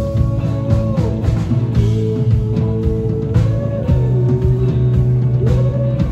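Live rock band playing an instrumental passage with no singing: electric guitar holding long notes that bend up and down, over electric bass and a drum kit.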